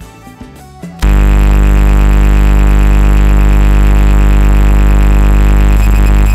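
A very loud, steady electrical buzz, a low mains-type hum with many overtones, that starts abruptly about a second in and holds unchanged at a flat level, swamping the quiet live percussion. Its onset and perfectly fixed pitch point to a fault in the sound feed rather than an instrument.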